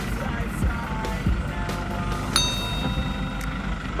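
Steady low rumble of a vehicle's engine and road noise heard inside the cabin, with a short, bright ding about two and a half seconds in.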